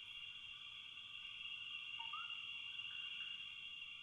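Crickets chirring steadily, faint, like a night-time insect chorus. About two seconds in comes a brief rising call.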